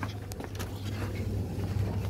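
Handling noise from a handheld camera being carried: scattered short scrapes and knocks of the device rubbing against clothing, over a steady low hum.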